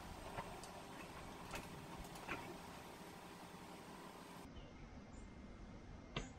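Faint room tone with a few faint, short ticks.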